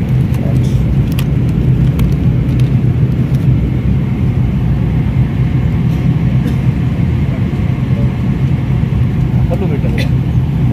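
Steady, loud low drone of an airliner cabin in flight, engine and airflow noise. A few light clicks from a plastic water bottle being handled on the tray table come in the first few seconds.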